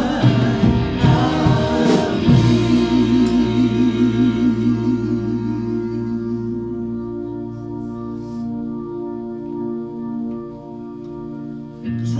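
Live church worship band playing: singing voices and cymbal strikes in the first couple of seconds, then a long held keyboard chord that gradually fades softer.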